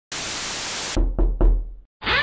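Logo-intro sound effects: a burst of static hiss for about a second, then three heavy knocks with a deep boom under them, fading out.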